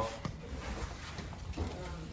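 Channel-lock pliers turning a toilet's water supply shutoff valve closed: a faint click near the start, then soft handling noise in a quiet small room.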